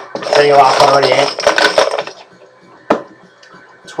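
Numbered lids clattering together as a hand stirs and shakes them inside a cigar box. A dense rattle lasts about two seconds, and one more click comes near the three-second mark.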